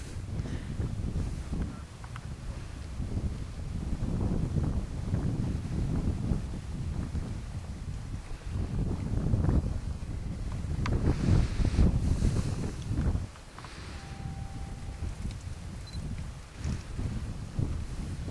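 Wind buffeting the microphone in uneven gusts, with a low rumbling noise that swells and drops and eases off after about 13 seconds.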